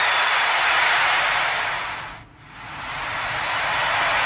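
A steady rushing, hiss-like noise that fades to a brief dip a little past halfway and then swells back to its earlier level.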